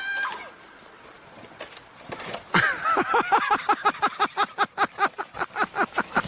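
A person laughing hard: a long run of quick pitched "ha" bursts, about six a second, starting about two and a half seconds in after a short lull.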